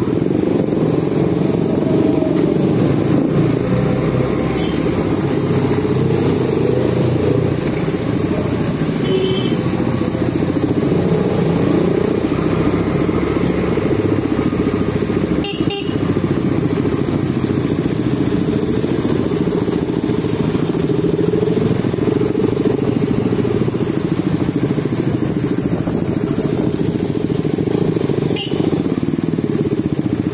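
KTM Duke single-cylinder motorcycle engine running while riding, its note rising and falling with the throttle, mixed with the engines of other motorcycles close ahead. There is a brief dip in the sound about halfway through.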